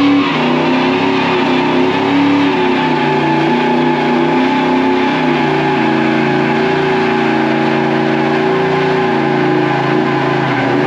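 Ford Mustang engine held at steady high revs during a burnout, the rear tyres spinning and smoking.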